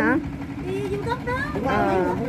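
People talking over the steady hum of a small boat's engine running on the river.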